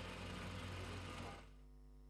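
Faint, steady mechanical hum of roadwork machinery working a street trench, dropping away about a second and a half in.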